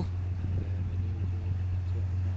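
Canal barge's diesel engine running at idle: a steady low hum.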